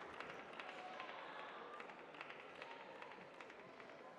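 Quiet indoor hall ambience with scattered light footsteps and taps on the court.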